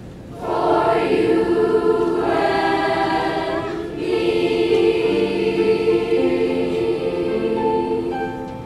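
A children's school choir singing together, coming in strongly about half a second in after a quiet moment, with a short break in the line around four seconds.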